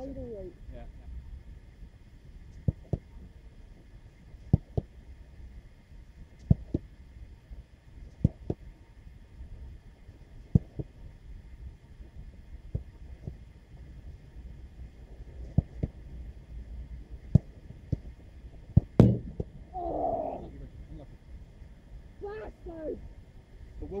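Footballs being struck and saved in a goalkeeper reaction drill: sharp thuds, often two close together, coming every couple of seconds, with the loudest pair near the end.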